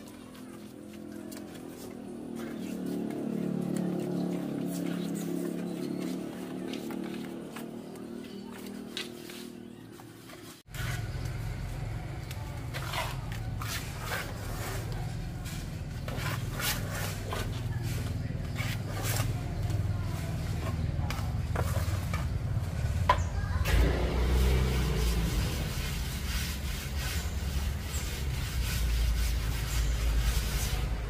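A masonry trowel scraping and tapping as cement plaster is worked onto a concrete column: many short scrapes and clicks over a steady low rumble. In the first third, before them, a low pitched drone rises and falls.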